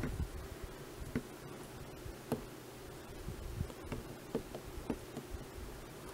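Faint steady hum, with a few soft clicks and taps scattered throughout as fingers press and smooth wet epoxy clay on a plastic model horse.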